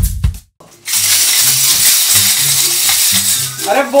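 Lezim being shaken rapidly and continuously over a music track with a bass line. The lezim is a wooden-handled Maharashtrian dance jingle whose metal discs on a chain make a dense metallic jingling. It starts about a second in, after a few rhythmic beats at the very start.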